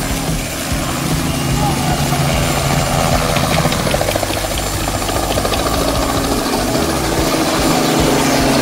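Light helicopter lifting off and climbing close overhead, its rotor chopping steadily over the engine noise. It grows louder as it nears.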